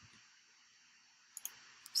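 A few faint, sharp computer mouse clicks over quiet room tone: a quick pair about a second and a half in and one more near the end.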